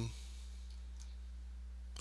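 Quiet room tone with a steady low hum and a faint computer-mouse click about a second in, as the map view is zoomed.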